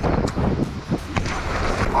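Wind rushing across a helmet-mounted action camera's microphone as a mountain bike flies off a jump toward an inflatable landing bag, with a sharp knock just over a second in.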